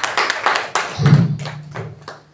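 A small group applauding with hand claps, which thin out and fade toward the end.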